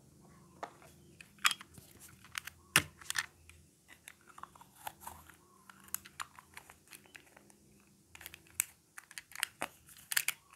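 Hard plastic toy ice cream pieces being handled: irregular clicks and taps as the scoop balls, cones and a plastic ice cream scoop are picked up, knocked together and fitted into place, with a few sharper knocks about a second and a half and three seconds in.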